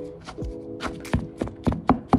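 A plastic spoon stirring crumbled cornbread dressing in a plastic bowl, knocking against the bowl in a quick, irregular run of sharp taps. Background music holds a steady chord underneath.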